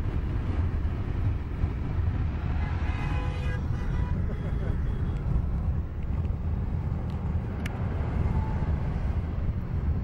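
Steady low rumble of a car, engine and road noise heard from inside the cabin.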